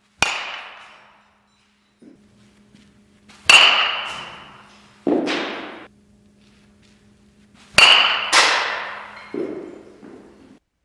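A metal baseball bat hitting a ball three times, a few seconds apart. Each hit is a sharp ping with a short ring, followed by duller thuds as the ball lands in the netting.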